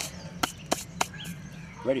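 A handful of sharp, separate clicks and taps, about five in two seconds, from fishing tackle being handled by hand.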